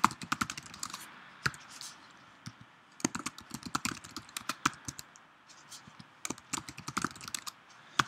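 Typing on a computer keyboard in a few quick bursts of keystrokes with short pauses between them.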